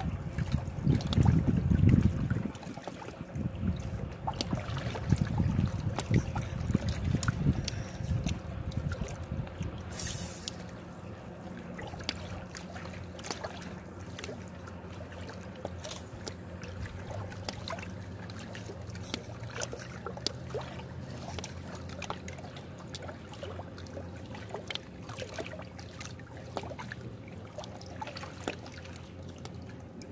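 Small lake waves lapping and trickling against shoreline rocks, a steady run of little splashes and clicks. Louder low rumbling surges fill the first eight seconds or so. A faint low hum from a distant motorboat runs under the water for much of the rest.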